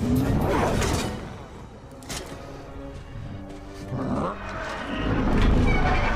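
Film-soundtrack music from an action scene, with a low rumble that swells toward the end and a few brief knocks.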